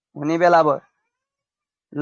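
A single drawn-out spoken syllable, about two-thirds of a second long, its pitch rising and then falling.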